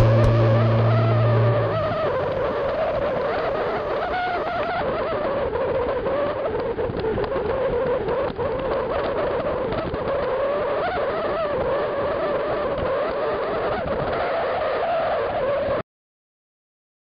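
Steady road noise from travelling along asphalt: a wavering whir with wind rush, which cuts off suddenly near the end. Guitar music fades out in the first second or two.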